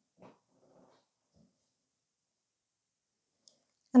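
Near silence: room tone with a few faint, brief sounds in the first second, then a woman's voice begins speaking at the very end.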